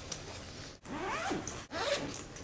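Zipper on a fabric messenger bag being pulled open, in two pulls: one about a second in and a shorter one near the end.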